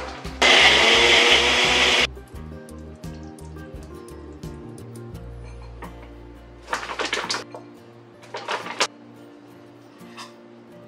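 Blender running briefly on a frozen-fruit smoothie, a loud burst of about a second and a half just after the start that cuts off suddenly. Background music plays throughout, and two shorter noisy sounds come near the end.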